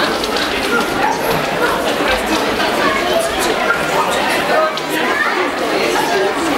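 A dog barking amid the steady chatter of a crowd of people.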